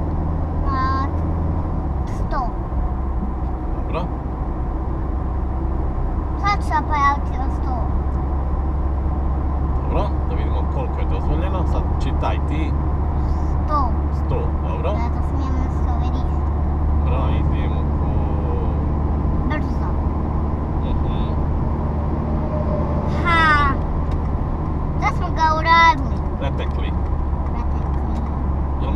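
Steady low drone of a car's engine and tyres at motorway speed, heard inside the cabin, with a few short high-pitched voice sounds now and then, the longest near the end.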